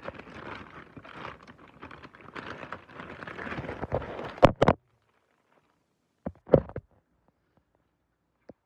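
Rustling and scraping of a phone being handled against its microphone, ending in two sharp knocks about halfway through. It then cuts to silence, broken a second or two later by a short pair of thumps.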